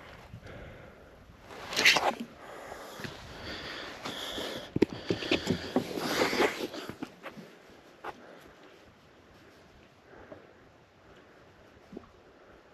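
A man breathing hard and sniffing, with a loud exhale about two seconds in and a run of sharp knocks and rustling from about four to seven seconds, then quieter.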